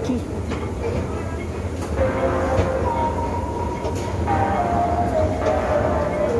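Escalator running with a steady low rumble and hum during a ride down. From about two seconds in, background music with held melody notes comes in over it.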